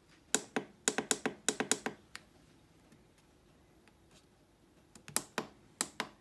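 Fingers pressing the buttons on a dual-zone air fryer's control panel: a quick run of about ten sharp clicks in the first two seconds, a pause, then a few more clicks near the end.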